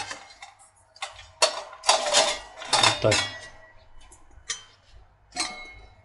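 Embossed metal Turkish double teapot being handled: the two pots clink and knock against each other several times, with short metallic ringing.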